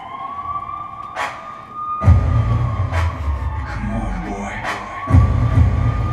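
A siren-like wailing tone that slowly rises and falls, with sharp clicks every second and a half or so and heavy deep bass hits that come in about two seconds in and again near five seconds.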